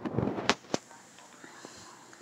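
A short whispered voice, with two sharp clicks about half a second in, then only faint steady room noise.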